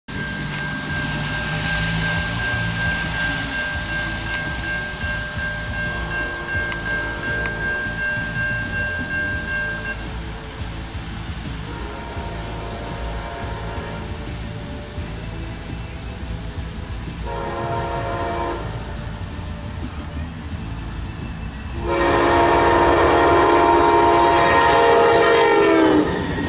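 Amtrak P42 diesel locomotive's air horn sounding a series of blasts for the grade crossing, growing louder as the train nears, ending in a long, loud blast from about 22 seconds in as the locomotive reaches the crossing. Heard from inside a car.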